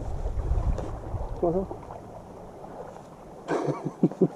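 Wind rumbling on the microphone, strongest in the first second and a half and then easing off, with a single short spoken word about a second and a half in.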